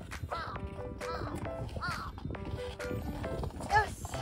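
Light background music with a woman's short, high-pitched effortful cries as she struggles to stand up on skis, the loudest one near the end.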